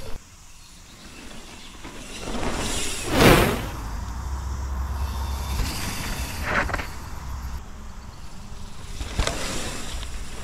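Mountain bike riding past close to the camera on a dirt trail: knobby tyres rolling and a rush of air that swells and fades, loudest about three seconds in, with a second, quieter pass-by later.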